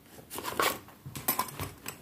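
Handling of a fabric manicure case holding metal tools: a few short rustles and light clicks as a metal nail file is taken out, the loudest about half a second in.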